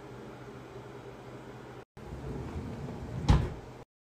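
Steady low background hum, then after a cut about two seconds in, handling noise and a drawer sliding shut with one loud thud a little after three seconds in.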